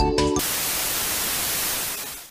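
The end of a music track cuts off abruptly a fraction of a second in, replaced by loud, steady television static hiss that begins to fade near the end.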